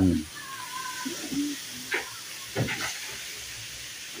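Chopped papaya and cassava leaves frying in oil in a wok, a quiet steady sizzling hiss, with two light knocks of the metal ladle against the wok about two seconds in.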